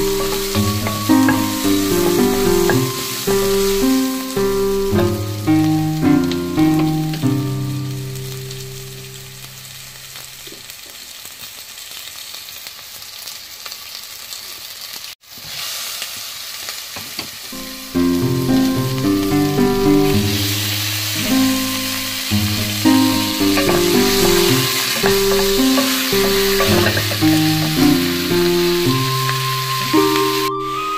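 Onions and beef sizzling as they fry in a pot and are stirred with a wooden spoon; the sizzling grows louder in the second half. Instrumental background music plays over it, fading out near the middle and coming back a few seconds later.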